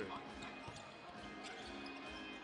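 A basketball dribbled on a hardwood court, a few dull bounces spaced out over faint arena background noise.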